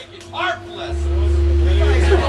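The band's amplified instruments start sounding: a steady held tone comes in early, then a loud, steady low drone sets in about a second in, with a brief voice near the start.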